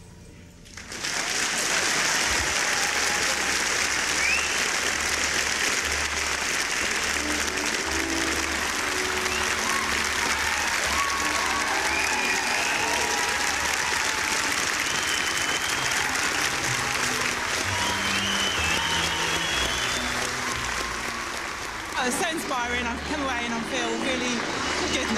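Large audience clapping and cheering after a choir's song, with scattered whoops. It starts about a second in and carries on steadily, with voices coming in near the end.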